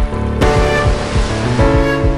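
Instrumental section of a rock song with no vocals: distorted electric guitar chords held over steady, driving drums.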